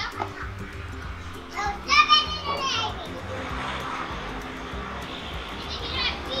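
Children playing and calling out, with one loud, high-pitched child's shout about two seconds in, over quiet background music.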